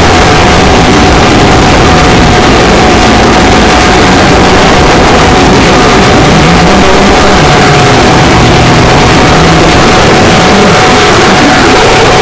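Loud, dense, heavily distorted electronic dance music mixed live from a DJ controller: a wall of noise with a steady high tone held through most of it.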